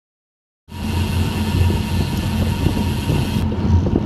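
Silence, then about half a second in a sudden steady rush of wind and road noise on a cyclist's action-camera microphone while riding, heavy in the low end; the high hiss thins out near the end.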